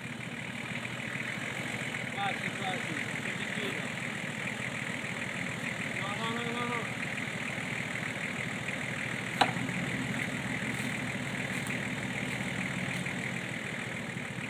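A four-wheel drive's engine idling steadily, with faint voices in the distance and one sharp click about nine seconds in.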